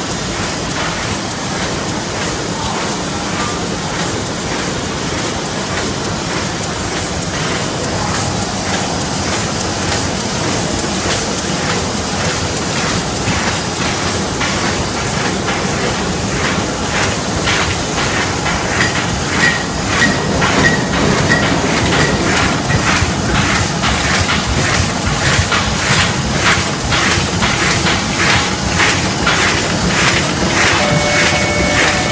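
Automatic flatbed die-cutting machine for card and corrugated board running: a steady mechanical clatter with a regular beat of clicks, which grows a little louder and sharper in the second half.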